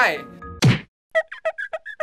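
A single loud whack, a comic hit sound, a little over half a second in, then a quick run of about eight short pitched blips like a musical sting.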